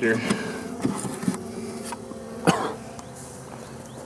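Honeybees buzzing in a steady low hum around the hive, with a few small clicks and a single sharp cough a little past halfway, from the smoke.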